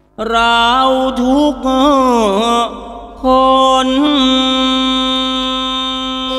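A male lae singer chants Thai lyrics in the Thai sermon-song style. The voice slides through ornamented, wavering phrases, breaks briefly, then holds one long steady note.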